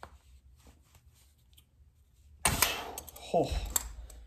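Knipex Cobra pump pliers working a tightly seated one-inch PVC fitting: faint small clicks of the pliers, then about two and a half seconds in a sudden burst of effortful breath with sharp clicks as he strains to turn it, ending in a strained "oh". The fitting is on too tight to break loose with the small pliers.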